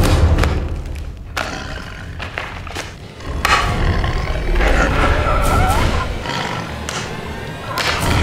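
Film soundtrack music with heavy low thuds. It is loudest in the first second, drops back, then swells again about three and a half seconds in.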